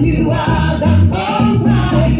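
Live gospel song: voices singing through microphones over conga drums and a steady, repeating low bass line.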